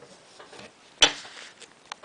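A square of origami paper being creased and handled by hand: one sharp paper crackle about a second in, then a faint tick near the end.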